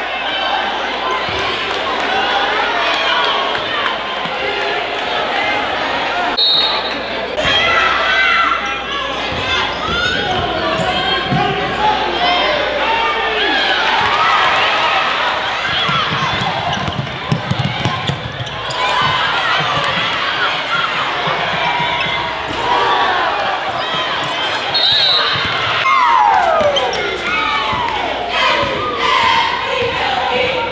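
A basketball being dribbled on a hardwood gym court under a continuous hum of many spectators' voices, echoing in a large hall.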